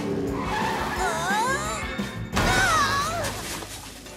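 Cartoon race cars speeding past with wavering tyre squeals, twice, over background music.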